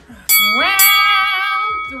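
A bell sound effect struck twice about half a second apart, its tone ringing on, under a long drawn-out voice calling "round".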